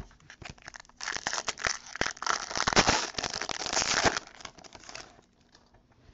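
A foil trading-card pack wrapper being torn open and crinkled: a dense run of crinkles and rips from about a second in until about five seconds in.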